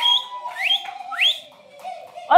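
Three quick rising whistles, about half a second apart, over a held note that trails off.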